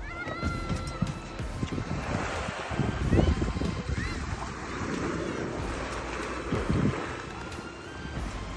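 Wind buffeting the microphone over waves at the water's edge, with a few short rising chirps.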